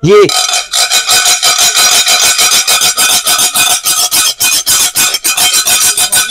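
A steel spoon scraped rapidly back and forth across the glazed surface of a ceramic serving platter, about eight strokes a second, the dish ringing under each stroke: a scratch test of the glaze.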